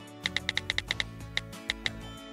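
Smartphone keyboard tap sounds: about eleven short, pitched ticks, quick and regular in the first second and then sparser, over background music.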